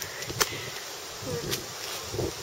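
Steady outdoor background hiss with two sharp clicks about a second apart.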